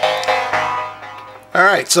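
Keyboard synthesizer music from a Korg Kronos sequencer playback: a last chord sounds and dies away over about a second. A man starts speaking near the end.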